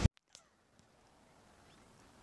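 Near silence: wind noise on the microphone cuts off abruptly at the very start, leaving only a faint tick about a third of a second in.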